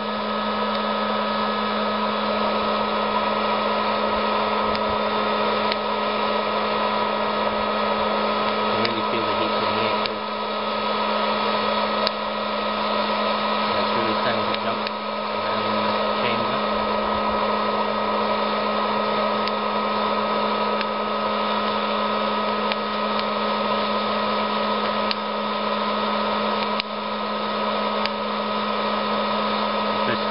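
A 900-watt hot-air popcorn popper roasting coffee beans: its fan and heater give a steady whir with a hum. Scattered sharp cracks every few seconds are the beans cracking as the roast goes on.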